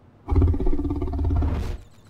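A deep, rough growl from a cartoon character's voice, starting about a third of a second in and lasting about a second and a half before cutting off.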